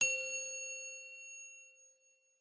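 A single bright metallic ding, like a struck bell, that rings out and fades away over about two seconds: a logo sting sound effect.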